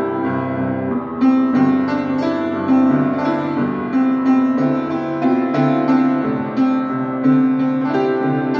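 Solo piano playing chords. A held chord changes to a new strongly struck chord about a second in, then notes are struck about twice a second over sustained harmony.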